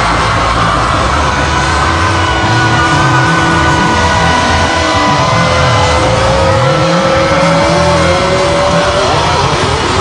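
Loud rock band music: electric guitars holding long sustained notes over bass, one note bending upward near the end.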